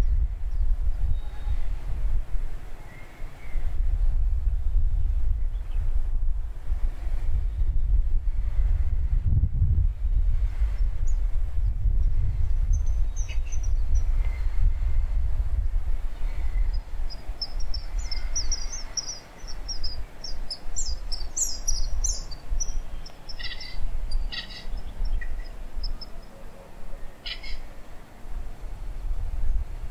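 Birds chirping, with a run of quick high chirps in the second half, over a steady low rumble.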